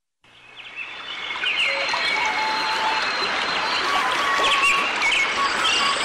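Many small birds chirping over a steady hiss, fading in from silence during the first second and a half.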